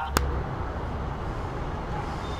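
A short click, then the steady low rumble of city traffic noise.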